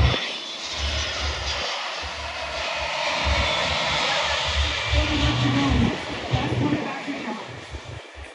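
FedEx Boeing 757-200's twin jet engines in a flyby: a steady, rushing jet noise that fades toward the end as the airliner climbs away. Low, gusty rumbling on the microphone runs underneath it.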